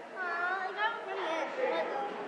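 Indistinct background chatter of several voices, with no words picked out.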